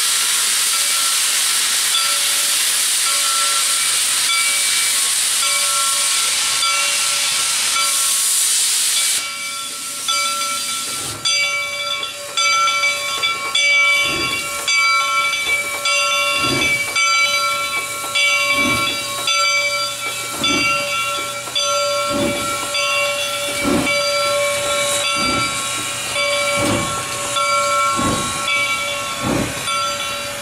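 Reading & Northern 425, a 4-6-2 Pacific steam locomotive, starting a train. For the first nine seconds steam hisses loudly from its open cylinder cocks, then the hiss cuts off suddenly. After that its exhaust chuffs come about once a second as it pulls past, with several steady high-pitched tones sounding throughout.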